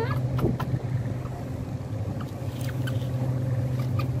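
A steady low mechanical hum, like a motor or engine running, with a few faint clicks over it and a brief laugh right at the start.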